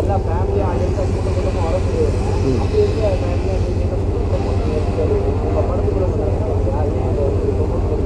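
Faint talking away from the microphones over a steady low rumble.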